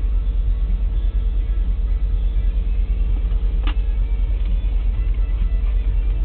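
Loaded coal hopper cars of a freight train rolling past: a heavy, steady low rumble under a faint steady whine, with one sharp click a little past halfway.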